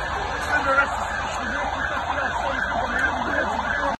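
Emergency vehicle siren sounding in quick rising-and-falling sweeps, about two a second, growing clear about a second and a half in, over background voices and street noise.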